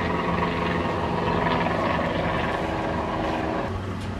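A steady mechanical drone with several held tones over a background hiss, shifting in pitch near the end.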